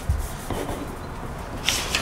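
Paper being handled and pens writing on sheets at a table, with a soft low thump just after the start and a brief papery rustle near the end.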